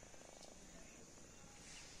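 Kitten purring faintly.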